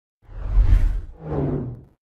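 Two whoosh sound effects with a deep bass rumble, one after the other, each swelling and fading in under a second: a TV news title-graphic transition effect.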